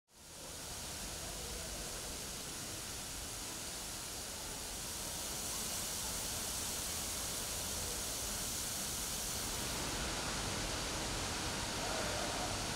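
Steady hiss of background ambience with no distinct events, growing slightly louder about halfway through.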